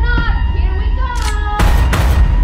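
Film trailer sound mix: a deep, continuous low rumble under wordless voices that slide up and down in pitch, broken by two sharp hits, one about a second in and one near the end.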